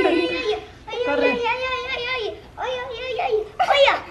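Children's high-pitched voices in play, shouting and squealing without clear words, ending in a sharp falling squeal just before the end.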